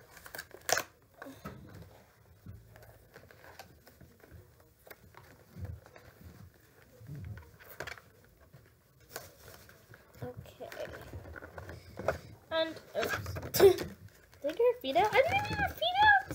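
Small scissors snipping, in scattered separate clicks, as plastic ties are cut to free a doll from its box, with packaging handled and rustling between the cuts.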